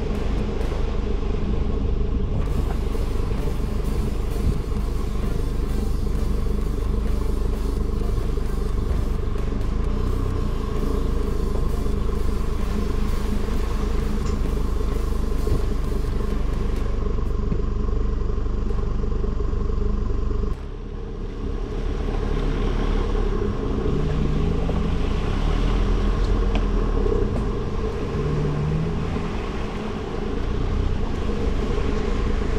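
Engine and drivetrain of an off-road 4x4 heard from inside the cabin, running steadily as it crawls slowly along a muddy, puddled trail. The sound drops and changes abruptly about two-thirds of the way through.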